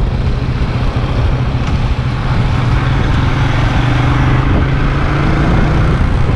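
Steady low rumble of a moving road vehicle, engine and road noise, with a faint steady hum rising above it for a couple of seconds after the middle.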